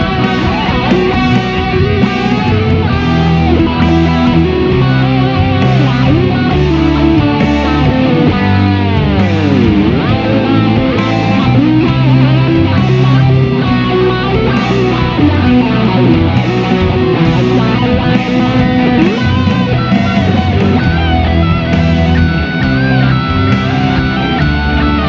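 Electric guitar playing a lead line over a rock backing track with low bass notes. About eight seconds in, one long note slides steeply down in pitch.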